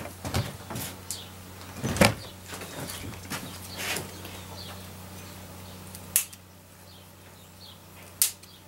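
Small scissors snipping rosemary stems: several irregular sharp snips and clicks, the loudest about two seconds in and the last around six seconds, over a faint steady hum.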